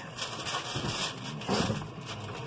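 John Deere 6150R tractor's six-cylinder diesel idling steadily at about 900 rpm, heard from inside the closed cab, where it is quiet.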